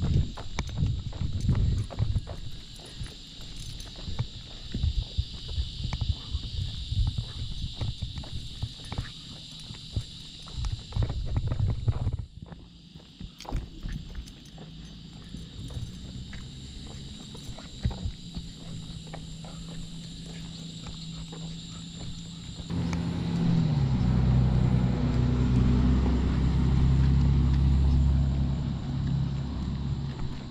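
Footsteps on a concrete sidewalk with irregular clicks and rattles as a dog is walked on a leash. About three-quarters of the way in, a louder low rumble comes in and holds until near the end.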